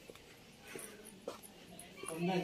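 Faint short animal whines, a couple of brief cries a little under a second apart.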